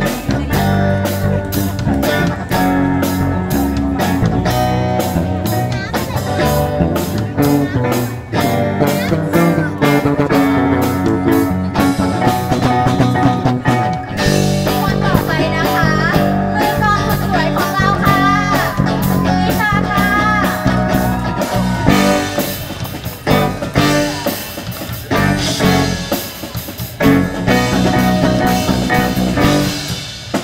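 Live rock band playing: electric guitar, bass guitar, keyboard and a drum kit keep a steady beat. A wavering lead melody stands out in the middle.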